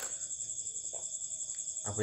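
Crickets chirping in a steady, high-pitched trill of fast, evenly spaced pulses.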